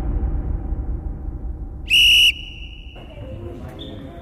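A single short, steady whistle blast about halfway through, the kind a referee gives to start play. Before it, a deep low rumble fades away.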